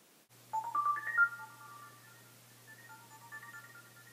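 Mobile phone ringtone: a short melody of stepped tones rising in pitch, loudest about a second in, then repeating more quietly.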